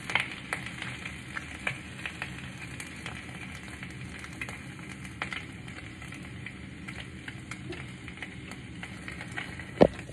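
Egg frying in oil in a pan: a steady sizzle with scattered small pops and crackles. A loud bump just before the end.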